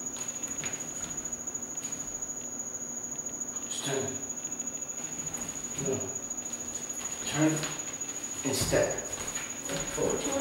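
A steady high-pitched whine runs throughout. Over it come a few brief muffled voice sounds and a low thump of bare feet on a hardwood floor about nine seconds in.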